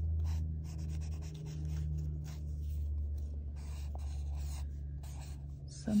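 Sharpie felt-tip marker drawing on paper in short scratchy strokes, over a steady low hum.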